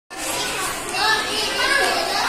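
Young children's voices chattering and calling out, high-pitched.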